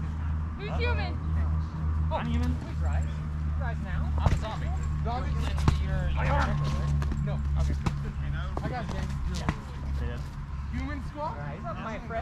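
Voices of foam fighters calling out at a distance over a steady low rumble, with a few sharp knocks scattered through, typical of foam weapons striking shields and bodies.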